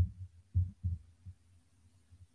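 Four dull, low thumps in the first second and a half, then only a faint low hum.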